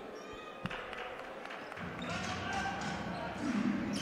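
Faint live game sound from a basketball court: a ball bouncing and players' voices over a low crowd murmur, with one sharp knock about two-thirds of a second in.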